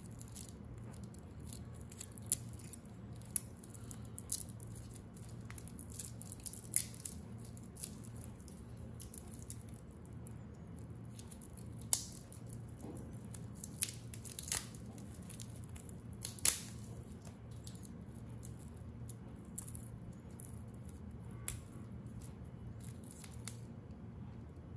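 Irregular light metallic clicks and clinks as metal watch bracelets and their fold-over clasps are handled, a few sharper clicks near the middle. A faint steady low hum underneath.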